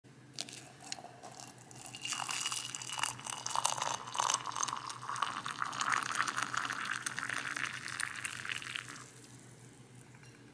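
Hot water poured in a steady stream into a ceramic mug over a tea bag, starting about two seconds in and stopping near the end, its pitch rising as the mug fills.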